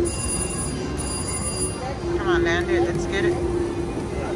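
VGT Crazy Cherry slot machine spinning its reels, with a steady electronic tone and a warbling, bell-like electronic chime about halfway through, over the noise of a busy casino floor.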